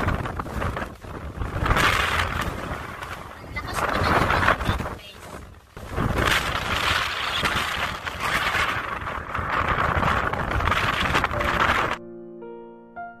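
Strong wind buffeting the phone's microphone, a rumbling rush that swells and drops away in gusts every couple of seconds.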